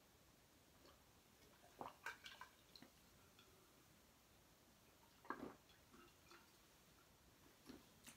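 Near silence, broken by a few faint gulps and small clicks as a man drinks from a glass jar: a cluster about two seconds in and another about five seconds in.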